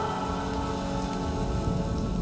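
Rain falling steadily, under the last held notes of background music fading away.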